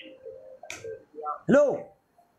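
Mainly speech: a man's voice calls out a short word, "hello", near the end, after a single sharp click about a third of the way in.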